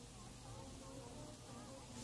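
Near silence between two songs of a cassette album: faint tape hiss with faint, wavering tones beneath it.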